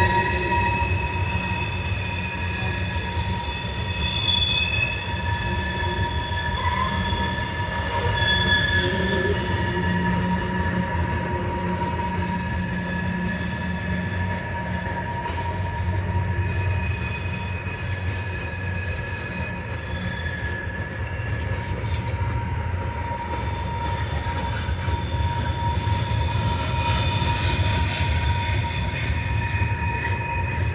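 Freight train's covered hoppers and tank cars rolling past with a steady low rumble of steel wheels on rail. Over it runs a steady squeal from the wheels, with higher squeals coming and going every few seconds.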